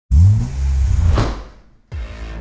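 Intro sound effect: a sudden deep boom that rings on and fades, with a whoosh sweeping through about a second in, dying away just before the end.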